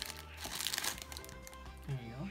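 Plastic wrapper of a pack of Marinela Príncipe sandwich cookies crinkling as it is opened, loudest about half a second in. Background music plays throughout.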